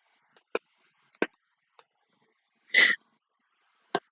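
Two small sharp clicks, then one short breathy huff from a person about three seconds in.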